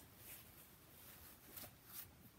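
Near silence: room tone, with one faint short click or rustle about one and a half seconds in.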